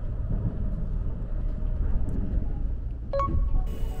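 Nankai rapi:t electric limited express train running, a steady low rumble heard from inside the passenger cabin. About three seconds in, a short high tone sounds briefly.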